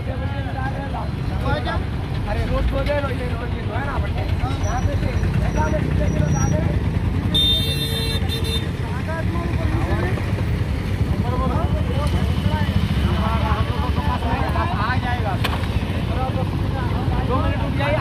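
Steady low rumble of road traffic, with several people talking over one another close by.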